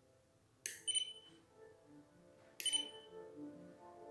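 Two short sharp clicks with a brief high ring, about two seconds apart, from an Arduino relay module switching as buttons are pressed in the phone app.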